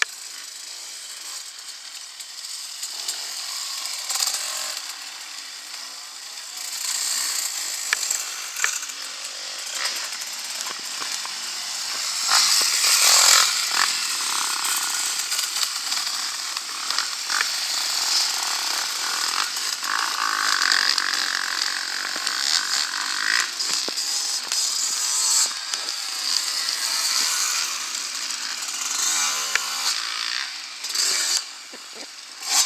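Dirt bike engines revving as riders go through a corner and climb past on an enduro course, at their loudest about twelve seconds in.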